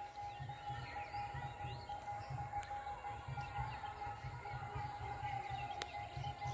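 Quiet outdoor field ambience: faint bird chirps over low, uneven wind rumble on the microphone, with a thin steady tone.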